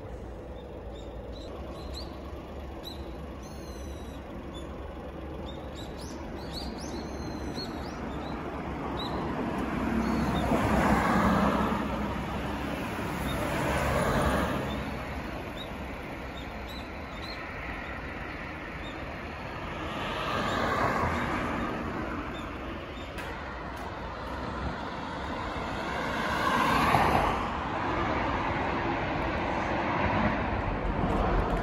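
Road traffic: cars passing on the road one after another, each swelling and fading over a couple of seconds, about four pass-bys over a steady low rumble.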